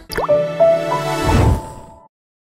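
A closing audio logo: a single water-drop plop, then a short musical sting of a few held tones over a low hum, with a deep swell about a second in, fading out by the end.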